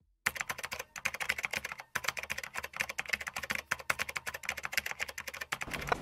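Rapid, irregular clatter of keyboard-typing clicks, a sound effect, starting a moment in and stopping just before the end.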